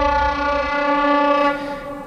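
A train's horn sounding one long steady blast that fades out shortly before speech resumes.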